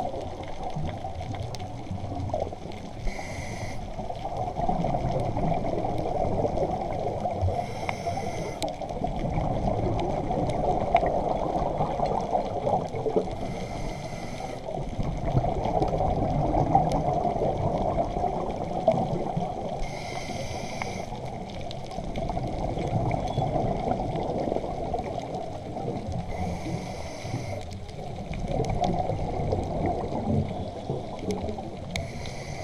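Scuba diver's regulator breathing underwater: a short hiss of inhalation about every six seconds, five times, with a steady rumble of exhaled bubbles in between.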